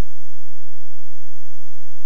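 A pause in speech filled only by a steady low electrical hum with a thin, faint high-pitched whine above it, the background noise of the microphone and sound system.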